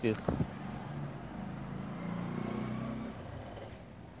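A passing road vehicle's engine, swelling about a second in and fading near the end.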